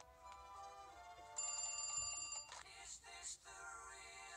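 Cartoon desk telephone ringing, a steady high-pitched ring lasting about a second, over light background music.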